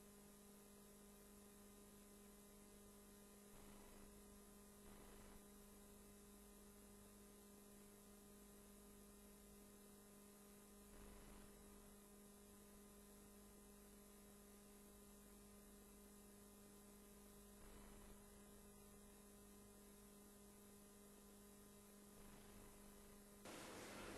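Near silence: a steady low electrical hum on the audio feed, with a few faint brief noises now and then.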